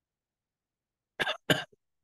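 A person coughing twice in quick succession over a video-call line, with dead silence before the coughs.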